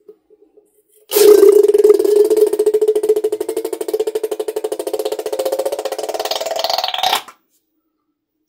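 Rubber balloon neck buzzing as thick slime is squeezed out through its snipped-off tip: a loud, pitched buzz that starts about a second in, lasts about six seconds, rises a little in pitch near the end and then stops suddenly.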